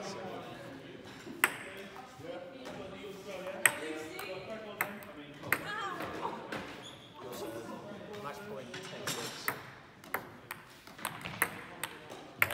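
Table tennis ball clicking off bats and the table: single hits spread through the first half, then a quicker run of hits near the end.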